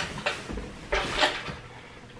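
Rustling and brushing of shirts being handled, with a few short swishes and a longer, louder one about a second in.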